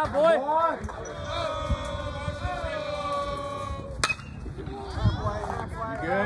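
Voices shouting from the ballpark, including one long held call lasting about three seconds. About four seconds in comes a single sharp crack of a baseball bat hitting the ball, followed by more shouts.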